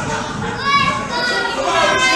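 Children's high voices shouting and chattering, several at once.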